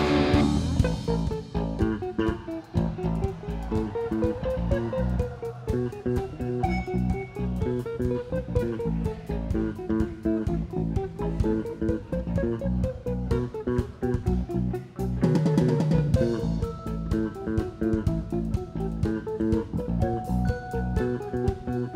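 Live rock band playing an instrumental jam passage: a wavering electric guitar melody over bass guitar and steady drums.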